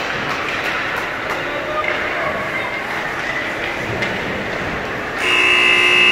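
Ice rink ambience during a youth hockey game: a steady wash of noise with distant voices and a few light stick clicks. About five seconds in, the rink's buzzer starts, a loud steady tone.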